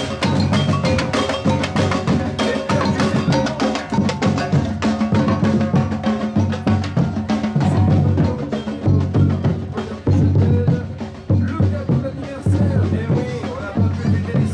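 Street percussion band drumming a steady, dense rhythm: bass drums beaten with felt mallets under a fast rattle of snare drums played with sticks.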